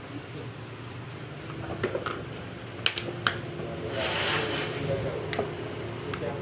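Small metal parts of a dismantled power steering pump clicking lightly as they are picked up and set down on a board, a handful of separate clicks, with a brief hiss partway through over a steady low hum.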